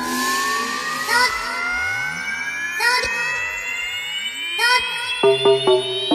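Breakbeat DJ mix at a breakdown: a stack of synth tones rises steadily in pitch in an alarm-like riser, with a sharp hit about every two seconds and a deep bass sliding down and up. The chopped bassline comes back near the end.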